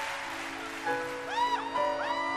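A live band begins a slow song intro with overlapping held notes as the audience's applause dies away. A few high tones slide up and down about halfway through.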